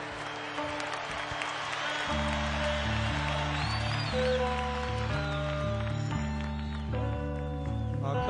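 Live rock band playing a slow instrumental opening: sustained electric guitar notes, some bent, over a deep bass line that comes in about two seconds in.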